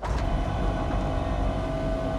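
Film soundtrack: a steady deep rumble with held tones above it, starting abruptly.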